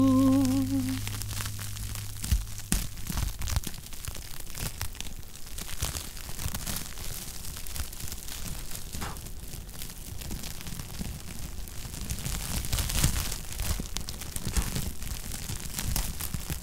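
Handheld sparkler burning with a dense, irregular crackle, a little louder about twelve seconds in. The song's last held chord fades out in the first second or so.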